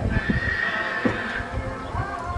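A horse whinnying, one long high call lasting about a second and a half, over the dull hoofbeats of a horse cantering on sand.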